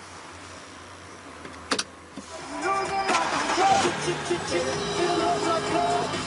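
A BMW's engine is started with a click about two seconds in and then runs at idle. Background music comes in over it about halfway through.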